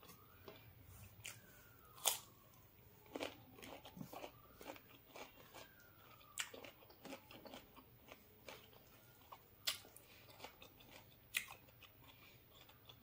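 Close-up eating sounds: faint chewing and crunching of a meal of rice and fried fish eaten by hand, with a handful of sharper crunches standing out among softer mouth clicks.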